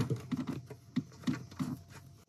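Light, irregular clicks of a small metal acorn nut being turned by hand onto a seat-rail retaining bolt, metal ticking on metal.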